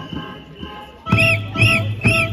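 Two short, shrill whistle blasts in the second half, each rising and falling in pitch. Music with steady held tones plays under them.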